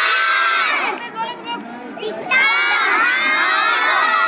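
A group of young children shouting together in two loud bursts, the second starting a little past two seconds in.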